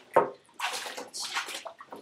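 A hand splashing and swishing water in a large plastic bucket, in two short rushes of splashing.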